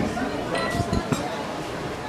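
Glasses and cutlery clinking in a restaurant dining room, with a few sharp clinks and short rings about a second in.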